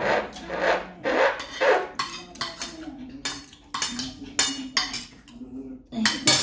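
Spoon and fork scraping and clinking against a plate while eating: a few rasping scrapes, then a run of quick light clinks.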